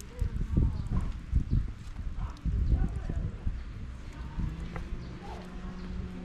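Footsteps crunching on gravel, coming in two spells of irregular steps in the first half. A faint steady low hum starts near the end.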